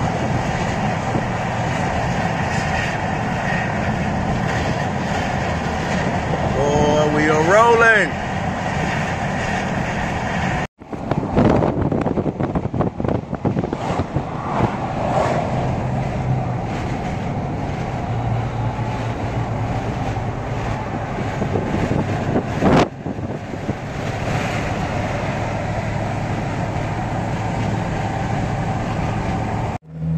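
Steady road and engine noise heard from inside a moving vehicle's cab, with a short rising tone about seven seconds in. The sound drops out for an instant twice, about eleven and twenty-three seconds in.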